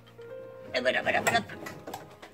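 A woman's short spoken word over quiet background music with held tones.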